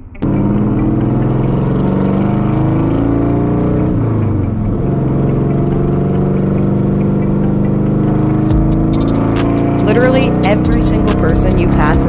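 Chevrolet El Camino's engine running under load as the car drives, its pitch falling briefly about four seconds in and then climbing again. A voice joins it in the last few seconds.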